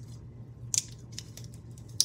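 A short crisp snap-like rustle about three quarters of a second in, with a fainter one near the start, as a ribbon bow is pressed onto a mini glue dot and pulled off its paper roll. A steady low hum runs underneath.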